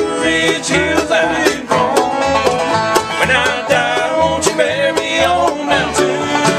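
Bluegrass band playing live: banjo and strummed acoustic guitar with a steady beat.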